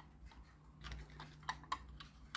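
Faint clicks and taps of small plastic gears and a metal axle being handled and fitted into a toy car's friction-motor gearbox, a few short clicks in the second half.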